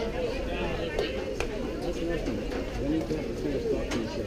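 Spectators chattering in the background at an outdoor ballfield, with a few sharp clicks.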